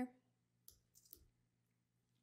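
Near silence broken by a few faint, short clicks from working at a computer, about two-thirds of a second in and again around one second in.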